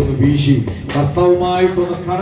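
A man's amplified voice praying aloud through a microphone, drawing out one word in a long held tone about midway, over a low steady background tone.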